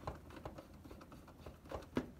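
Faint, scattered clicks and light taps of fingers handling a PS4's metal hard-drive bay, with a sharper click near the end.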